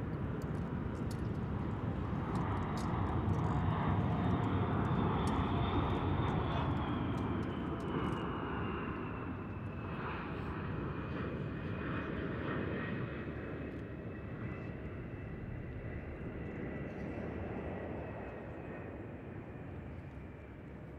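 Jet aircraft passing overhead: a broad engine rumble swells to its loudest about four seconds in and then slowly fades, with a high engine whine that falls steadily in pitch as it goes.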